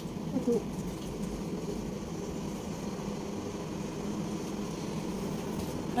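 A steady low background hum.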